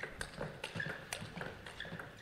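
Celluloid-type table tennis ball being struck by rubber-faced rackets and bouncing on the table in a fast rally: a run of sharp ticks, several a second.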